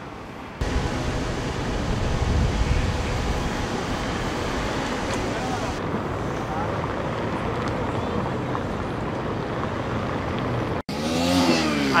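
City street traffic noise: a steady rumble of cars going by, which cuts off abruptly near the end.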